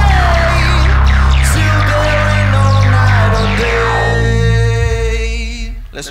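Live modular synthesizer music: a loud, deep bass note that changes pitch every two seconds or so, under a run of repeated falling synth sweeps. It fades and stops just before the end.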